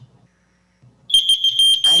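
Piercing high electronic beep from a podium speaking timer, starting about a second in and holding one steady pitch: the signal that the speaker's time limit has run out.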